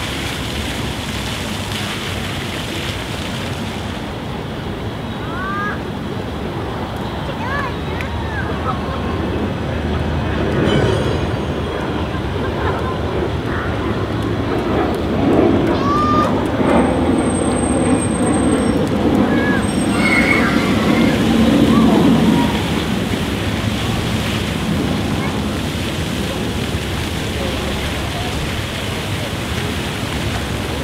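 Splash-pad fountain jets spraying and splattering onto wet paving, a steady rush of water, with children's short shouts now and then. A louder low rumble swells through the middle and fades again.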